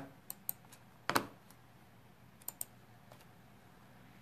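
A handful of separate clicks on a computer keyboard, with one louder double knock about a second in.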